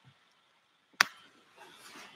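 A single sharp click about a second in, then faint rustling.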